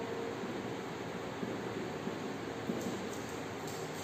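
Steady room hiss with a few faint scratches of a marker writing on a whiteboard.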